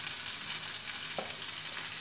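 Ivy gourd, onions and green chillies sizzling steadily in a little sesame oil in a kadai, a soft even frying hiss with one faint tick just over a second in.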